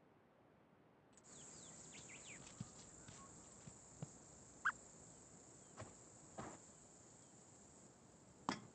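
Faint desert ambience from a commercial's soundtrack, starting about a second in: a steady high insect drone with scattered short bird chirps and a few light clicks.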